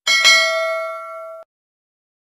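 A single bell-like ding sound effect, the notification-bell chime of a subscribe-button animation. It rings and fades for about a second, then cuts off abruptly, leaving silence.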